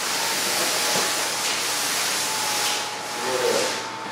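The battery-powered blower fans of inflatable T-Rex costumes are running: a steady hiss of rushing air with a faint steady whine beneath it.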